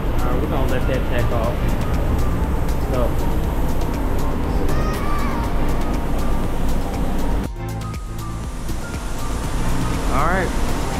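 Paint spray booth ventilation fans running with a steady rush of air, with faint voices in the background. The sound dips briefly about three-quarters of the way through.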